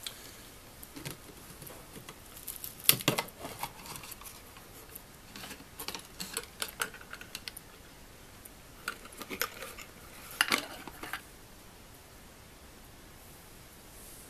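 Scattered small clicks, taps and rattles of a plastic jar lid and its wire electrodes being handled and lifted out of a nickel-plating bath, with the loudest knocks about three seconds in and again about ten and a half seconds in.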